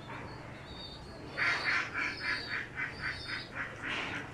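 A bird calling in a rapid series of short raspy calls, about five a second, starting about a second and a half in.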